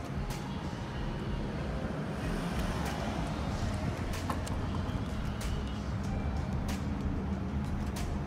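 Steady low rumble of road traffic, with a few short sharp clicks scattered through it.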